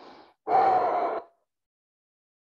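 A man's short, faint in-breath, then a loud breath out lasting about a second: the cued exhale as he folds his head to his raised knee in heron pose.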